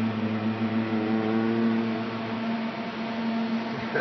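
Steady low hum and fan hiss from racks of computer and drive equipment in a studio machine room, a constant drone with a deeper layer that fades about halfway through.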